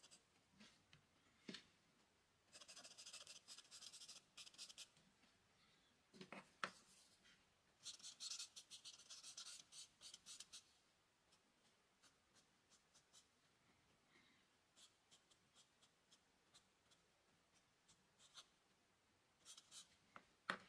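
Charcoal pencil and a paper blending stump working on drawing paper: faint scratchy strokes in two spells of a few seconds each, with light taps and ticks between.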